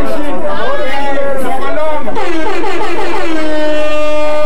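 A man's voice rapping into a handheld microphone, very loud, with other voices chattering around him. In the second half his voice draws out one long note that slides down and then holds.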